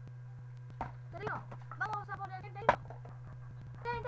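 A plastic water bottle, partly filled with water, lands on a table in a bottle flip. There is a knock about a second in and a sharp, loud hit about two-thirds of the way through, with brief voice sounds in between and at the end.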